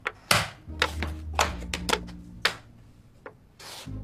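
Xiangqi (Chinese chess) pieces being slid and set down on the board, a handful of sharp clacks spread across a few seconds, with a low steady tone underneath.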